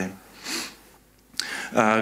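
A man's short breath drawn in through the nose, close to a handheld microphone, in a pause between sentences. A brief near-quiet follows, then speech resumes near the end.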